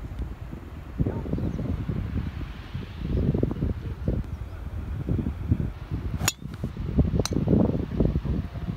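Wind buffeting the microphone in gusts, with the sharp crack of a driver striking a teed golf ball a little over six seconds in, and a second click about a second later.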